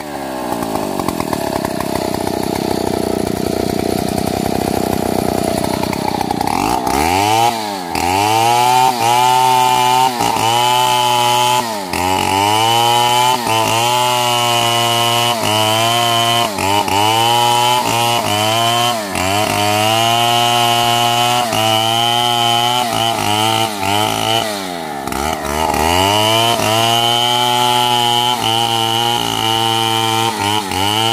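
Stihl MS 382 two-stroke chainsaw running at lower revs for about seven seconds, then opened up to full throttle and cutting into a tree trunk, its engine note dipping under load and recovering over and over, with one deeper dip about 25 seconds in.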